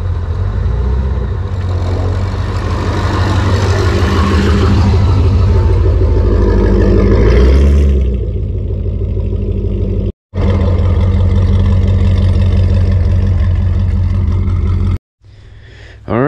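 A C5 Chevrolet Corvette's 5.7-litre V8 driving slowly past a camera set low on the ground, growing louder to a peak about seven to eight seconds in, then running steadily on. The sound cuts out briefly about ten seconds in and again near the end.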